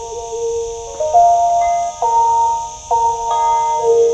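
Instrumental Lanna music on the phin pia, a chest-resonated stick zither: a slow melody of held notes, a new note about every second.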